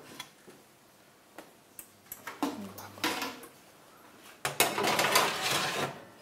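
A metal baking tray being slid into an oven, with a scraping rattle on the rails lasting about a second and a half, starting about four and a half seconds in. It comes after a few small clicks and knocks.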